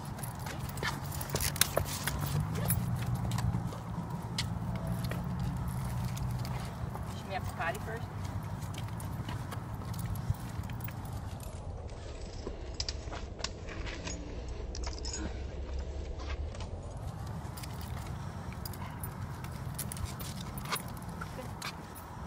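Footsteps on a concrete sidewalk and small clicks and jingles of a dog's leash and collar during a leashed walk, many short clicks scattered throughout over a steady low rumble.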